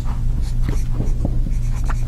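Dry-erase marker writing on a whiteboard: a series of short, faint strokes over a steady low hum.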